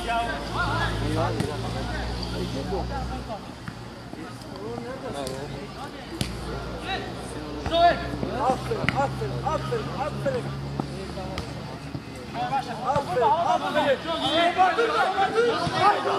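Men's voices shouting and calling during a five-a-side football game, with a laugh about four seconds in and a few sharp knocks of the ball being kicked, the loudest about eight seconds in. The shouting builds up again near the end.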